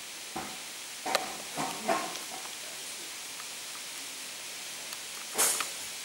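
Steady background hiss with a few faint knocks in the first two seconds, then a short, loud burst of noise near the end.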